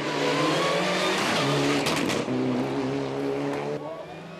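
Turbocharged four-cylinder engine of a Mitsubishi Lancer Evolution competition car, revving hard at race pace. Its pitch shifts a couple of times as the revs change, and it drops away near the end.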